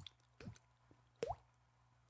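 Water-drop sounds made with the mouth: two short plops, each rising quickly in pitch, about half a second in and again just past a second. The tongue and soft palate make them, with a few faint tongue clicks between.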